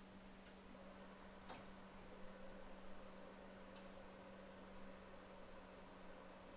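Near silence: room tone with a steady low hum and a few faint ticks, the clearest about a second and a half in.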